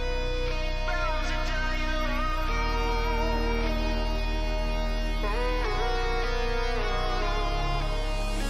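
A rock band's recording playing at an even level: sustained electric guitar chords over a steady low bass, with a melody line that bends up and down in pitch, in a build-up passage of the song.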